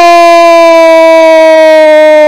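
A football commentator's long, loud goal shout, one vowel held on a steady pitch.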